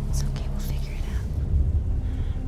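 A person whispering in short breathy phrases, mostly in the first second, over a steady low rumble and hum.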